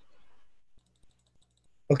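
Faint, rapid ticking of a computer mouse scroll wheel over a low hum, as a chart is zoomed out. A man starts speaking right at the end.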